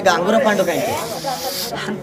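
Voices chanting and singing an oggu katha folk narrative, with a sustained hiss over about a second in the middle that stops abruptly.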